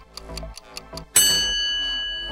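Countdown timer sound effect: a clock ticking over background music, then a little over a second in a bright bell ding rings out and lingers, marking time up.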